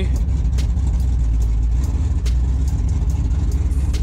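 A truck's engine running loud with a deep, steady rumble, heard from inside the cab as the truck starts to roll. A few sharp clicks sound over it.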